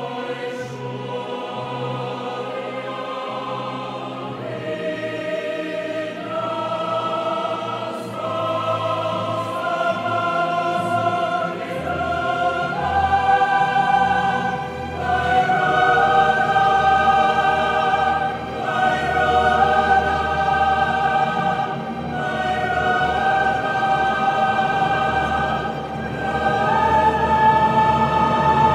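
Mixed choir singing long held chords over a string orchestra, the top line climbing step by step while the music swells louder.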